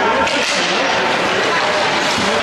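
Voices chattering in an ice arena, with one sharp crack about half a second in as hockey sticks and puck meet at a faceoff.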